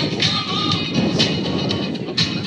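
Music with a steady beat, about two beats a second, and a melodic line over it.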